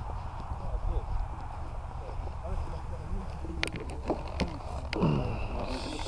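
Footsteps on grass with wind rumbling on the microphone, a few sharp clicks in the second half, and quiet voices talking.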